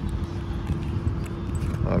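Wind buffeting a phone's microphone, an uneven low rumble, with a faint steady tone running under it.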